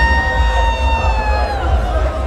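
A long, high-pitched note held steady, then sliding down and fading about a second and a half in, over crowd noise and a steady low rumble.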